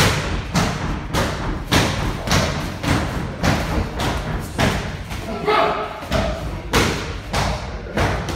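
Punches and kicks landing in kickboxing sparring: a steady run of dull thuds, roughly one every half second.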